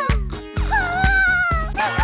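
Cartoon background music with a steady beat. Over it, the animated baby iguana gives a wavering, whimpering cry about half a second in, lasting about a second, and starts another near the end.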